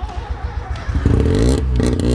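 Mazda 13B rotary engine in a Smart fortwo running, then revved about a second in with a rising pitch, easing off briefly before picking up again.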